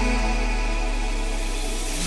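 Melodic trance music in a breakdown: sustained synth chords over a low bass tone, with no beat, slowly getting quieter.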